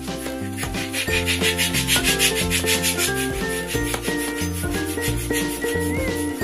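A latex balloon being inflated on a balloon pump: a rapidly pulsing hiss of air, starting about half a second in and loudest around two seconds in, over cheerful background music.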